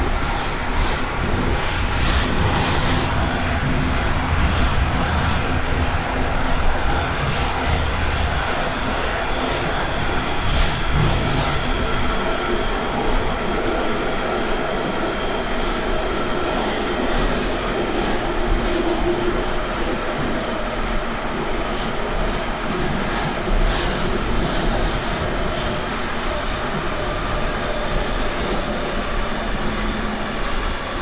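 Metro train running at speed, heard from inside the passenger car: a steady loud rumble of wheels on rail with a faint whine over it. The deep part of the rumble eases about twelve seconds in.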